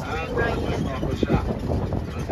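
Voices of people talking close by, with a low rumble of wind on the microphone underneath.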